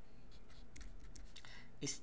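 Marker pen writing on paper, a series of faint short strokes.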